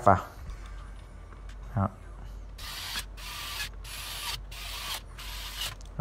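Screw being driven into the housing of a Ryobi cordless SDS rotary hammer during reassembly. A run of short rasping strokes, about two a second, starts a few seconds in and carries on.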